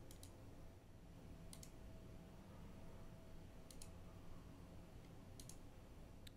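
Near silence with four faint computer mouse clicks spread out over a few seconds, some heard as quick double ticks.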